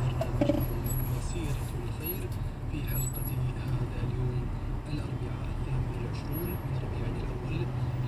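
Steady low rumble of a car's engine and road noise heard from inside the cabin while moving in slow traffic.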